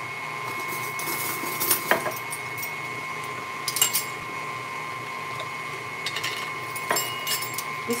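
KitchenAid stand mixer running steadily at speed, its motor humming with a high whine as the whisk whips Italian meringue. A few light clinks of utensils come about two, four and seven seconds in.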